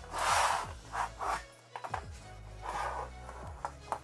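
Steel platform bed frame being flipped over and set on its legs on a hard floor: rubbing and scraping of metal on the floor in three bouts, the first and longest at the start, then a sharp knock near the end. Background music plays under it.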